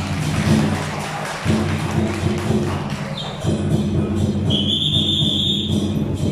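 Loud procession music with percussion accompanying a dragon dance, its sustained low tones breaking off briefly twice. A high steady tone enters about halfway through and again near the end.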